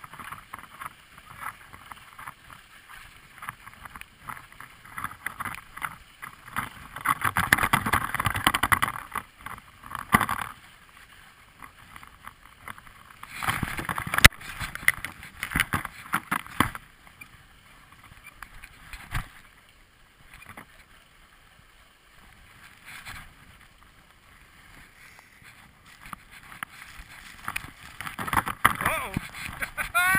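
Skis sliding and scraping on packed snow during a downhill run, heard from a camera worn by the skier. The rushing noise comes in a few louder swells with quieter gliding between.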